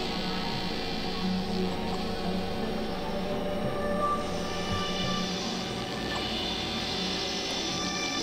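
Experimental electronic music: dense layered synthesizer drones, many steady tones held together at an even level.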